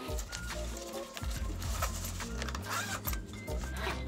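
Background music with a steady, stepping bass line, under faint clicks and rustles of hands fitting a protective cover onto a hydrofoil wing.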